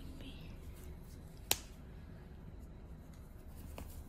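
Faint room tone with a single sharp click about a second and a half in.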